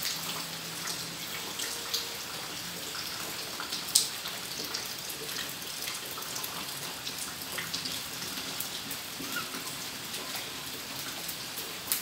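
Light rain pattering and dripping onto a wet tiled yard, with scattered single drops and a sharper tap about four seconds in; the shower is tapering off.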